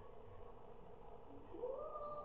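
A single high call starting near the end, sweeping up in pitch and then held briefly before fading.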